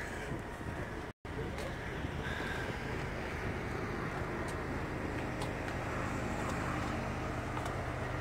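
Steady low hum of idling semi-truck engines and highway traffic, with one brief drop-out in the sound about a second in.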